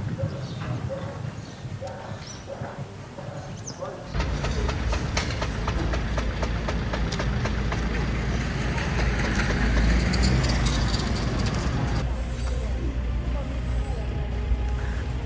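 Outdoor field sound: faint voices at first, then from about four seconds in a steady low rumble of wind on the microphone with scattered small crackles. It drops back near the end.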